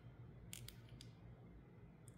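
Near silence with a few faint, short metallic clicks about half a second in: small handling noises of steel digital calipers on a small coil spring.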